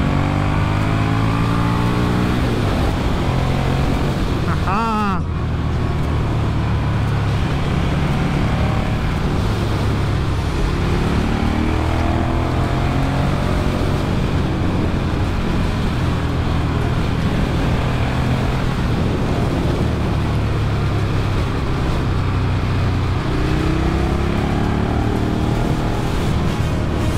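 KTM 1290 Super Duke R's V-twin engine heard from on board while riding, its note climbing several times as it accelerates through the gears, with one quick sharp sweep in pitch about five seconds in, over steady rushing noise.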